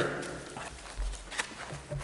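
A quiet room with a soft low thump about a second in and a single sharp click a moment later: small knocks and handling noises at the meeting table.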